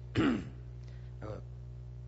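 A man coughs once to clear his throat into a desk microphone, a short loud cough with a falling pitch.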